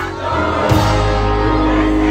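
Live rock band playing, with electric guitars and bass guitar holding chords and voices singing. A fuller chord with heavier bass comes in a little under a second in.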